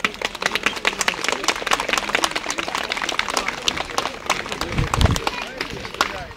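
Audience clapping after a brass band and majorette performance has ended, with people talking among the clapping. There is a short low bump about five seconds in.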